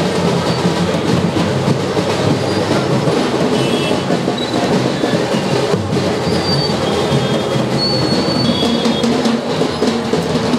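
Loud, continuous procession drumming, a dense rattling beat with crowd noise mixed in, going on without a break.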